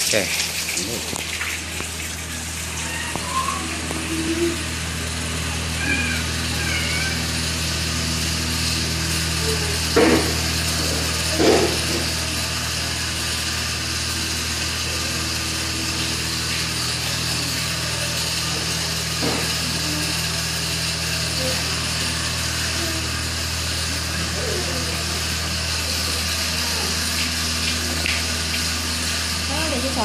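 Small children's faint high-pitched whimpers and vocal sounds over a steady low hum in a room, with a couple of short knocks about ten seconds in.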